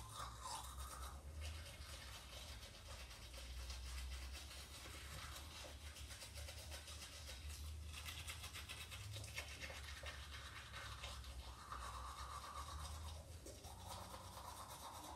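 Quiet, steady brushing of teeth with a toothbrush: rapid scrubbing strokes that swell and fade every few seconds, over a low hum.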